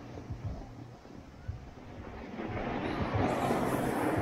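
Ski or snowboard edges scraping and sliding over packed snow, the hiss growing louder about two and a half seconds in. Wind buffets the microphone with low thumps.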